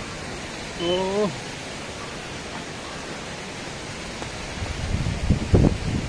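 Wind blowing across the phone's microphone: a steady rushing hiss, with gusts buffeting the mic in low rumbles near the end. A short voiced sound from the man comes about a second in.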